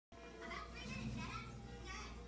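Children's voices talking and playing, with faint steady tones underneath.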